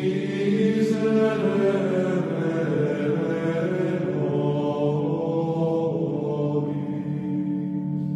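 Gregorian-style chant: voices singing long held notes over a steady low drone.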